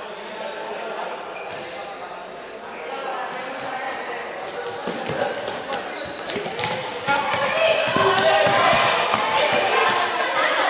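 Quick footfalls and shoe stamps of a group running on a wooden sports-hall floor, many sharp knocks from about halfway through. Players' voices and shouting get louder about seven seconds in.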